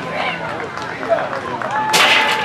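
Crowd of sideline spectators and players, many overlapping voices chattering and calling out at once, with a sharp clap or knock just before the end.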